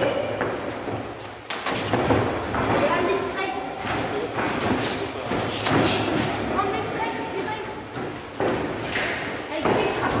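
Boxing-glove punches and kicks landing on gloves and bodies during sparring, a series of irregular thuds, with a sharp hit about a second and a half in and another near the end.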